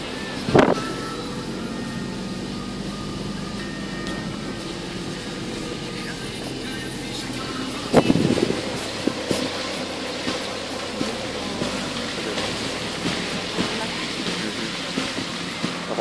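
Car rolling slowly along a rough dirt road, heard from inside the cabin: steady engine and road noise, with a sharp knock about half a second in and another about eight seconds in.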